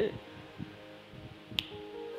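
Soft background music with held notes, and a single sharp snap about one and a half seconds in.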